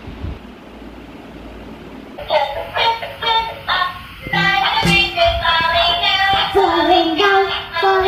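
Quiet room tone, then about two seconds in a song starts, sung by a high, child-like voice over music.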